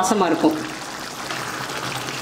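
Chickpea masala gravy simmering in a steel pan: a steady bubbling hiss from about half a second in.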